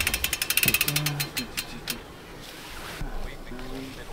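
A rapid run of sharp clicks, many a second, that thins out and stops about two seconds in, with a short low hum-like sound around the middle of the run.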